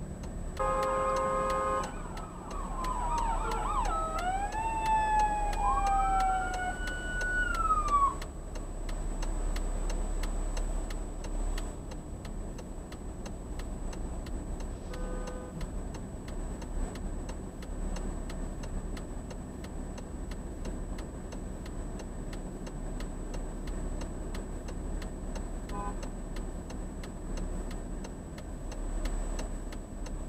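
Fire truck arriving: a brief air-horn blast, then its siren wailing in falling and rising sweeps for about six seconds before cutting off, and another short horn blast about halfway through. Traffic rumble and a steady faint ticking run underneath.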